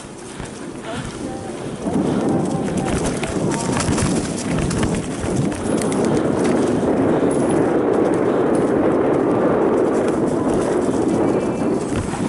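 Mountain bike (a Giant Trance) riding fast down a leaf-covered dirt trail: tyres rolling over dry leaves and packed dirt with a dense rattle of chain and frame and a rushing noise, louder from about two seconds in.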